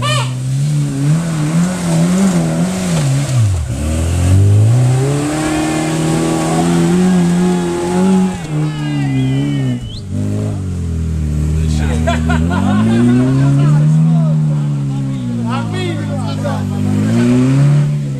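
Off-road 4x4's engine revving hard under load as it climbs a steep muddy slope, its pitch rising and falling repeatedly, dropping low twice as the throttle eases.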